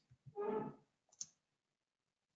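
A short voiced sound from a person, then a single computer keyboard key click a little past one second in.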